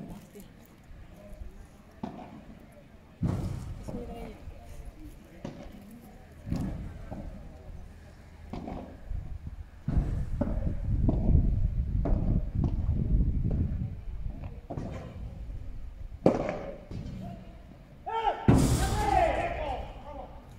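Padel rally: sharp hits of rackets on the ball and the ball thudding off the court's glass walls, spaced a few seconds apart, with a low rumble in the middle and a voice near the end.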